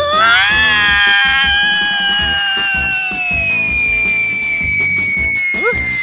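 A cartoon character's long yell, rising and then held for about three seconds as he is flung away, over a long, slowly falling whistle sound effect. Background music with a steady beat runs underneath.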